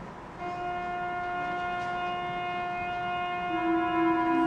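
Concert band holding a soft sustained chord of wind instruments, entering about half a second in after a brief hush, with a lower note swelling in near the end.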